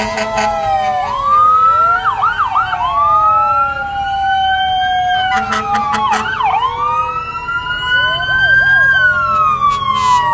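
Several fire truck sirens sounding at once: slow wails rising and falling in pitch overlap one another, and quicker yelping sweeps cut in every few seconds.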